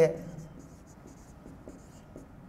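Marker pen writing on a whiteboard: a series of short, faint strokes, following the end of a man's word at the very start.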